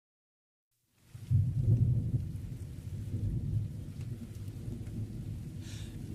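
A low rumble with a faint hiss above it, starting out of silence about a second in, strongest at first and then settling to a lower, steady level.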